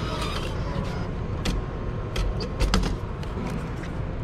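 Ventra ticket vending machine dispensing a fare card: several sharp mechanical clicks and knocks from about a second and a half in, over a steady low rumble.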